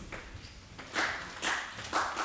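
Celluloid table tennis ball bouncing and being struck: a series of sharp pings, several about half a second apart.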